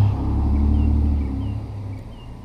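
A pickup truck driving past, a low rumble that is loudest at the start and dies away over about two seconds.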